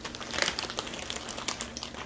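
Plastic packaging crinkling and rustling in irregular crackles as it is handled, loudest about half a second in.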